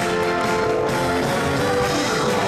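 Live soul band playing with no voice: drums under held chords that break up into moving notes partway through.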